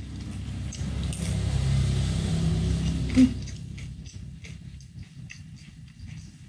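A low engine rumble that swells and fades over the first four seconds, as of a motor vehicle passing, with quiet close-up chewing and a short sharp sound about three seconds in.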